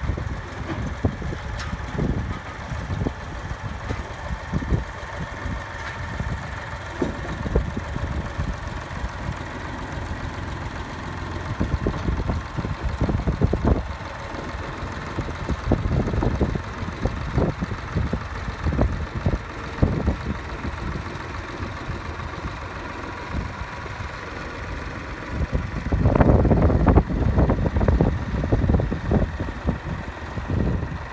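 International rough-terrain forklift's engine running steadily as it lifts and carries a steel feeder wagon, getting louder for a few seconds near the end.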